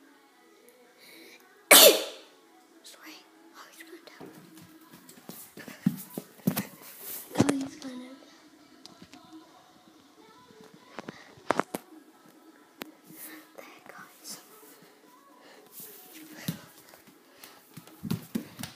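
Close handling noise of a phone camera being moved about: a sudden loud burst about two seconds in, then scattered knocks and rustles, over faint voices and a low steady hum.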